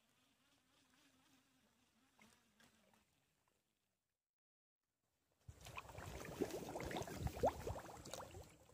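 A faint, wavering buzz like a fly or other insect for the first three seconds. Then, after a short gap of silence, loud rustling and scraping noise with many clicks starts suddenly about five and a half seconds in, as the camera is moved through dry grass and reeds.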